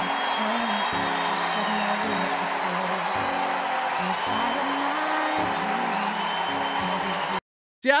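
A talent-show stage moment played back: music with sustained notes over dense audience applause and cheering. It cuts off abruptly near the end.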